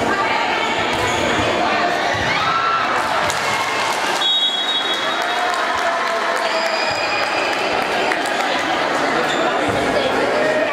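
Echoing hubbub of players' and spectators' voices in a large sports hall during a volleyball rally, with the ball being struck now and then.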